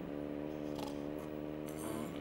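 A steady droning hum holding one even pitch, with a few faint, light high clicks, mostly near the end.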